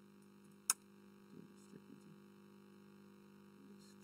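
Faint steady electrical hum, with a single sharp click less than a second in.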